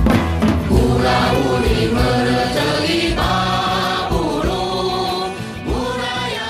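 A choir of voices singing a melody together over a band's sustained bass. The voices come in about a second in, after a short stretch of drum-led playing.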